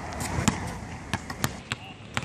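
Basketball bouncing on an outdoor court: a string of sharp, irregularly spaced bounces.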